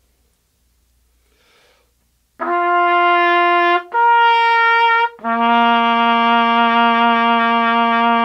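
Unlacquered brass B-flat trumpet playing three long, steady notes starting about two and a half seconds in: a middle note, a higher one, then a lower note held longest.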